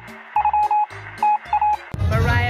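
Electronic beeping sound effect: several clusters of rapid, same-pitched high beeps over low pulsing tones, cutting off suddenly just before the end. It is dubbed over her talk as a comic 'encrypted call' mask.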